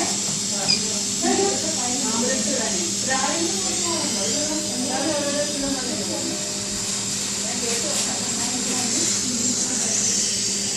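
Steady hiss of gas flowing through an Infant Flow SiPAP neonatal CPAP driver and its circuit, with a constant low electrical hum, under background talk.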